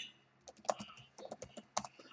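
Computer keyboard keys clicking faintly as a short phrase is typed: about a dozen quick keystrokes, starting about half a second in.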